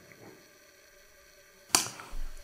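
A pause in conversation: faint room tone, broken near the end by a single sharp click.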